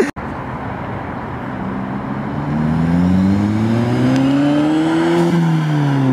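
A car's engine accelerating past: its note rises steadily for about three seconds, then drops in pitch near the end as the car goes by.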